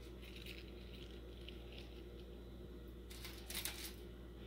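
Faint rustling and light crackles of roasted asparagus spears being laid onto lettuce leaves, with a louder rustle about three seconds in. A steady low hum runs underneath.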